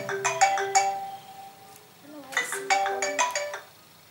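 Mobile phone ringtone playing a short melodic phrase, then repeating it a little past two seconds in, stopping shortly before the end.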